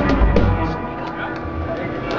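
Live rock band playing loud through a club PA, with drum hits at first; under a second in, the bass and drums drop away and sustained notes are left ringing.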